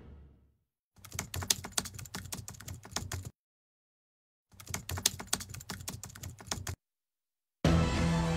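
Typing sound effect: two runs of rapid keyboard-style key clicks, each a little over two seconds long, separated by about a second of silence. Music fades out at the start and comes back in shortly before the end.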